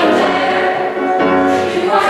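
Mixed ensemble of men's and women's voices singing together in harmony, holding sustained chords, with a change of chord about a second in.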